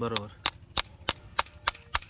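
Farrier's hammer tapping in quick, light, even strokes, about six a second, while shoeing a horse.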